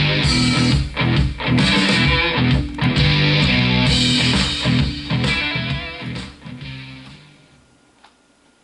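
Guitar music played from a CD on a Sony CDP-C315 CD changer. It fades smoothly to silence over its last two seconds or so as the player's Time Fade function winds the track down and pauses.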